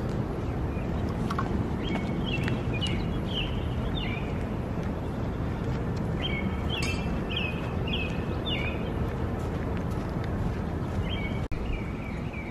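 A songbird singing three phrases of quick repeated chirping notes, a few seconds apart, over a steady low rumble of background noise.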